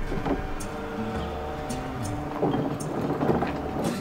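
Background music: held synth-like chords over a low bass line, with scattered light ticks. A noisy, rumbling wash builds up in the second half.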